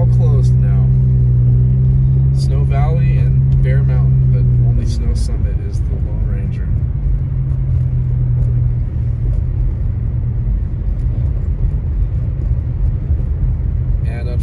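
Car interior noise while driving on a snowy road: a steady low drone with road rumble beneath it. The drone drops away about a third of the way through, leaving the rumble.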